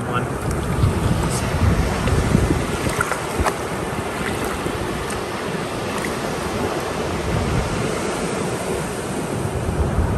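Ocean surf washing up and draining back over a sandy beach, with wind buffeting the microphone in a steady low rumble.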